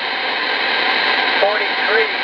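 Steady static and band noise from a CB radio receiver on channel 35, heard through its speaker while the operator listens after calling CQ. About one and a half seconds in, a faint distant sideband voice starts to come through the static: a DX station answering the call over skip.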